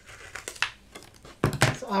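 Crinkling and rustling of a plastic-backed rub-on transfer sheet being handled and snipped with scissors, with a couple of sharp clicks about one and a half seconds in as the scissors are put down on the cutting mat.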